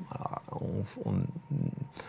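Only speech: a man speaking French quietly and hesitantly, repeating "on, on" between pauses.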